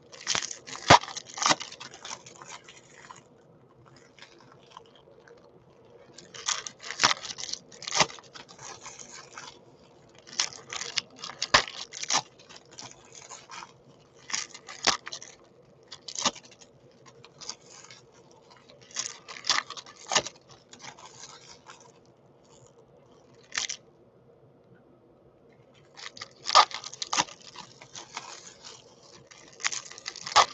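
Foil trading-card pack wrappers being torn open and crumpled by hand, with cards handled and stacked. The crackling tearing comes in bursts of a second or three, about every few seconds, with quieter pauses between.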